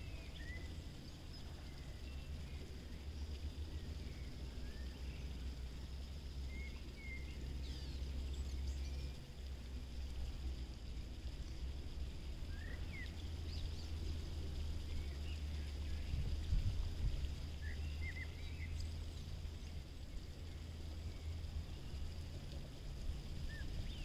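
Low, steady wind rumble on the microphone, with scattered short bird chirps.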